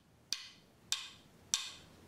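A metronome clicking a steady beat: three sharp clicks about 0.6 seconds apart, roughly 100 beats a minute. It sets the tempo for the counted marching exercise.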